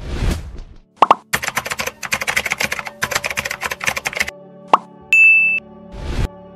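Animated logo sound effects: a whoosh, a pop about a second in, then a run of rapid clicks for about three seconds. Another pop follows, then a short high ding over a steady low hum, and a second whoosh at the end.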